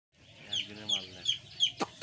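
A brood of day-old broiler chicks peeping in a brooder: repeated high, falling peeps, about three a second, with a sharp click near the end.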